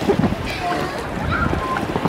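Shallow sea water sloshing and lapping as a person climbs onto a large inflatable float, with wind buffeting the microphone and faint voices in the background.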